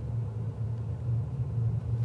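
Mechanical background noise at an imperfect NC 35 condition: a steady low rumble centred around 100 Hz, with the room's electronic acoustics switched on, which enhance the noise.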